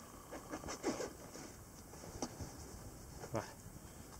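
Rummaging among small items in a small tin kit while searching for a phone charger: scattered light clicks and rustles of things being moved and handled.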